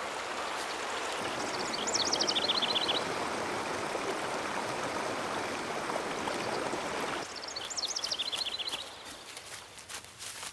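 Steady rush of running stream water, with a songbird twice singing a short phrase of quick notes that run down in pitch. The water sound drops away suddenly about seven seconds in.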